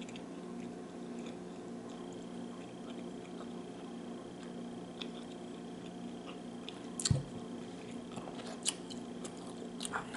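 Quiet chewing of a mouthful of cured pepperoni and salami stick, with a few small mouth clicks, over a steady low electrical hum. One sharp thump about seven seconds in.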